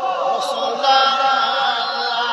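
A man's voice chanting in a drawn-out melodic line into a microphone, amplified by a public address system; a new long held note begins about a second in.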